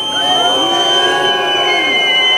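Crowd whistling: several long, steady whistles at different pitches held together, one high and shrill above the rest.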